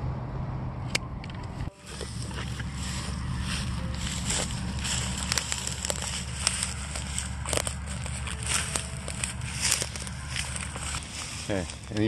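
Outdoor wind rumbling steadily on the microphone, with scattered crackles and clicks throughout. The sound cuts off sharply and restarts about two seconds in.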